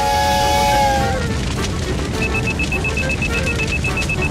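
A smoke detector alarm beeping rapidly and evenly, a high repeated beep several times a second, starting about two seconds in. Before it, a held low tone over a rushing hiss fades out about a second in.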